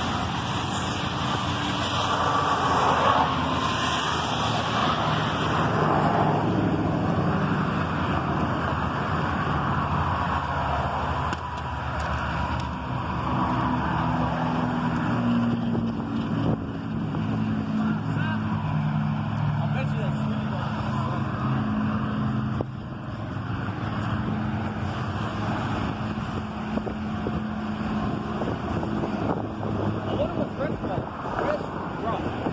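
Road traffic going by on a multi-lane road: a steady rush of passing cars, tyres and engines.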